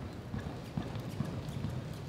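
Hoofbeats of a horse running at speed on soft arena dirt: a quick run of dull thuds with light clicks on top.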